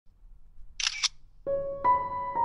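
A short camera-shutter click about a second in, then piano music begins with held notes.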